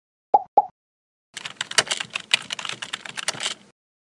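Two quick pitched plops, then a rapid run of computer-keyboard typing clicks lasting about two and a half seconds: animation sound effects for dots popping up and text being typed into a search bar.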